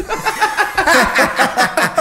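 Men chuckling and laughing together, mixed with a few muttered words.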